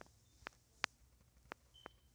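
Fingertips tapping on a phone touchscreen: about five faint, sharp clicks at irregular intervals, with a brief faint high beep near the end.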